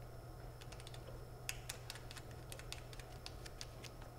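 Irregular run of light plastic clicks and taps as a locking knob is turned by hand to fasten a handheld turbine anemometer into its mount, over a steady low hum.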